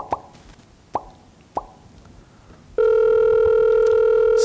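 A few short electronic beeps, then from nearly three seconds in a loud, steady telephone call tone from a softphone on a laptop, playing through the room speakers as a call is placed in a live demo.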